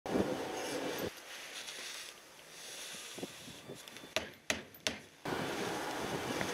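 Airfield ambience of wind on the microphone and a low rumble, which drops away about a second in and returns shortly before the end, with three sharp clicks or knocks in between.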